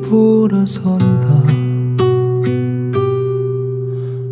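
Korean indie acoustic ballad in an instrumental passage without vocals. Acoustic guitar chords are struck about every half second, and the last chord rings out and fades near the end.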